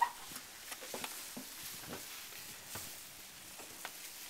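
Faint rustling and crackling of dry hay, with scattered small clicks and no steady rhythm.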